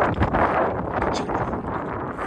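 Wind blowing across the microphone outdoors, a steady rushing noise.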